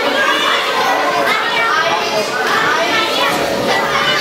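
A crowd of children chattering and calling out all at once, many high voices overlapping without a pause, in a large hall.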